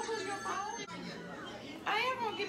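Indistinct chatter of several people talking, with no clear words.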